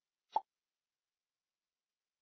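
A single short pop about a third of a second in, against otherwise dead silence on the call's audio.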